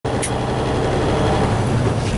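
Loaded semi-truck's diesel engine running steadily with road noise, heard from inside the cab while driving.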